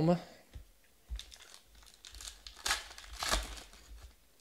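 Foil trading-card pack wrapper being handled and torn open: a run of crinkles, with the loudest rips a little under three seconds in and again just after three.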